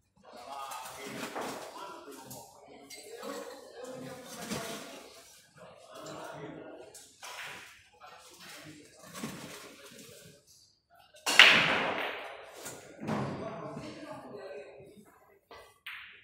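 Indistinct voices talking in a billiard hall, with one loud sharp knock about eleven seconds in that rings off briefly.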